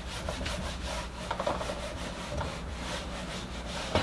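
Whiteboard eraser rubbing back and forth across a whiteboard in quick repeated strokes, wiping off marker writing, with a short knock near the end.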